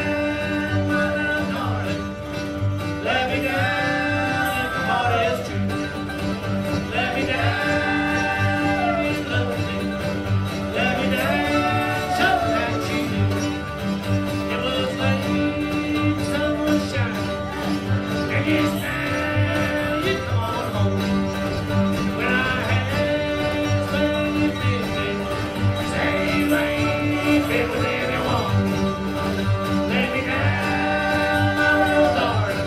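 Bluegrass band playing live, with acoustic guitar and upright bass keeping a steady beat under a gliding lead melody in phrases of a few seconds each.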